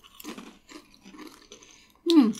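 Faint crunching and chewing of potato crisps in the mouth, a few soft irregular crunches.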